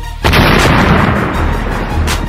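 A loud burst sound effect hits about a quarter second in and fades over about a second and a half, over background music with a beat.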